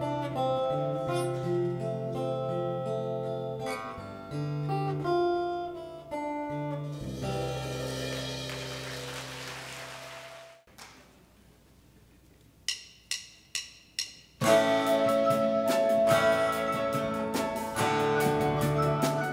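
Live band accompaniment plays a song to its close, ending in a cymbal swell that dies away into a brief hush. Four sharp stick clicks, about half a second apart, count in the next number, and the band comes in loudly.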